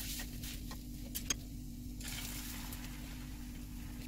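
Cooking at a nonstick frying pan on a gas stove: a utensil tapping the pan with two sharp clicks a little after one second, and a soft hiss around two seconds in as beaten egg mixture is poured in to extend a rolled omelette. A steady low hum runs underneath.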